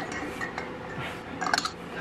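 Steel wrench working the nut on an intake manifold stud back and forth, making light metal-on-metal clinks, with a small cluster of them about one and a half seconds in.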